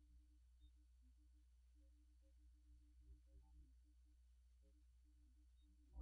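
Near silence: a gap in the recording with only a faint, steady low hum.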